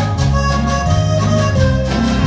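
Live cumbia band playing: accordion melody over electric bass and timbales, with a steady, even beat.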